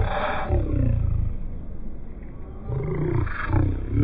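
A man's low-pitched voice in rising and falling bursts without clear words, dipping quieter around the middle.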